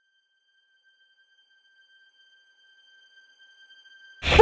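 Near silence with a faint, steady high-pitched electronic tone and its overtones held unchanged.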